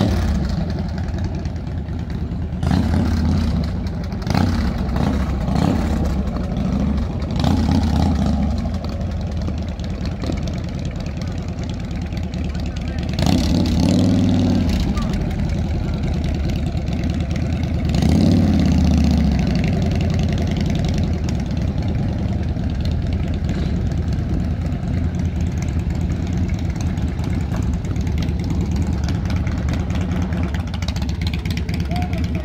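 Engines of a Ford Model T speedster and a cruiser motorcycle running at low speed on a gravel drive, swelling louder several times as they are revved and pull away.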